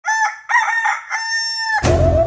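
A rooster crowing: two short notes and then one long held note. Near the end a sudden hit with a low bass note cuts in.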